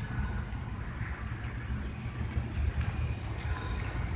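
Wind buffeting the microphone: a low, irregular rumble.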